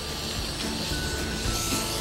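Soft background music with a few held notes, over a steady hiss.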